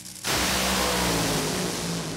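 Top Fuel dragster's supercharged nitromethane V8 on heavy throttle, very loud, cutting in suddenly about a quarter second in, its pitch falling slightly as it goes.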